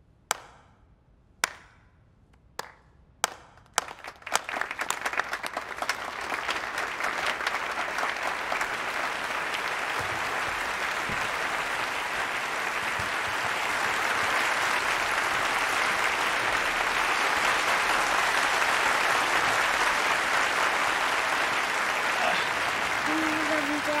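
A slow clap from one audience member: five single claps about a second apart. The rest of the audience then joins in and it builds into full applause, which grows louder about halfway through.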